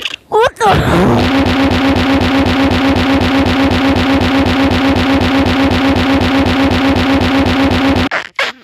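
A computer's sound output stuck in a loop: one fragment of audio repeats as a fast, even, buzzing stutter for several seconds, then cuts off abruptly. This is the frozen sound buffer of a Windows XP virtual machine that has just crashed to a blue screen.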